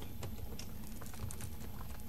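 Scattered light clicks and taps over the steady hum and hiss of the room recording.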